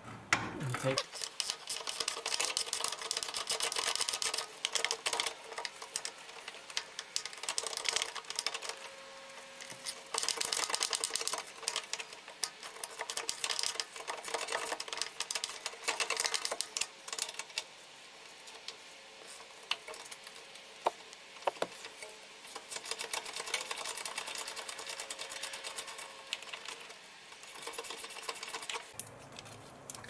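Socket ratchet clicking in several bursts of rapid clicks with short pauses between, as it is swung back and forth to run out a rear brake caliper carrier bolt that has already been broken loose.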